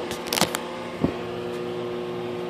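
A few light clicks in the first half second and a sharper knock about a second in, from handling the meter probes and bench gear, over a steady hum from the powered-up SB-220 linear amplifier.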